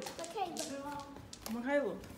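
Speech: a girl's voice exclaiming and talking, with a few sharp taps or clicks among the words.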